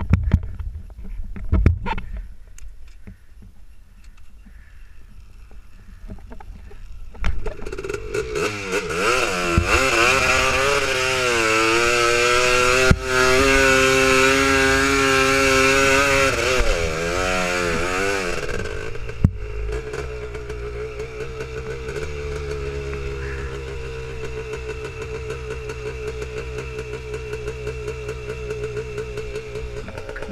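Honda TRX250R quad's two-stroke single-cylinder engine, low and quiet at first with a few knocks. About seven seconds in it revs hard up a sand hill, its pitch rising and wavering with the throttle for about ten seconds, then drops back to a steadier, lower running.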